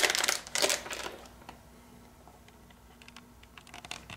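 Anti-static bag crinkling as a new hard drive is pulled out of it, loudest in the first second, then a quiet stretch with a faint steady hum and a few light clicks of the drive being handled near the end.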